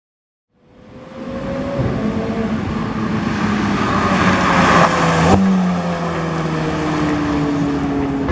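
McLaren 720S twin-turbo V8 supercar driving at speed on a circuit, its engine note building to a loud, steady run with the pitch gliding slowly down, and a sudden step in the note about five seconds in.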